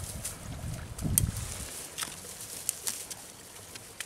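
Rustling and crackling of dry grass and roots as a rooted willow cutting is pushed by hand into soft soil, with scattered sharp crackles and a low rumble in the first second and a half.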